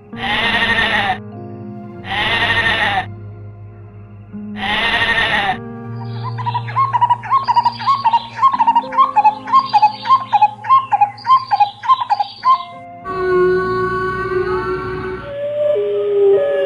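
Sheep bleating three times, each call about a second long, over steady background music. A bird then chirps a rapid series of short notes for several seconds, and a steady droning tone follows near the end.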